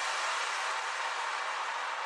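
Hissing white-noise wash closing an electronic music track, with no beat or bass under it, slowly fading.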